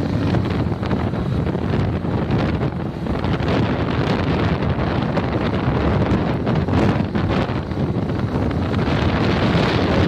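Wind buffeting the microphone of a camera on a moving motorcycle: a steady, loud rush of air, with the running noise of the motorcycles mixed in beneath it.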